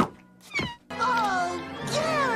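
Cartoon snail Gary's meowing cries, long and falling in pitch, starting about a second in, after a short sharp hit at the very start.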